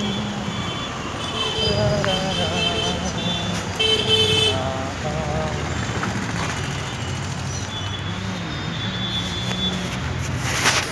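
Street traffic running steadily, with vehicle horns sounding several times; the loudest honk comes about four seconds in.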